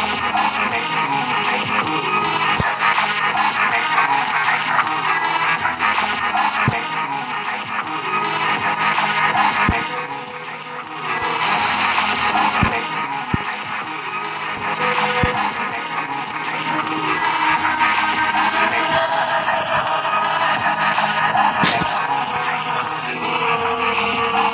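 Horror-themed electronic loop music played from a beat-pad app: drum, bass and arpeggiated synth loops running together, with a guitar loop and noise and stab effects layered in partway through.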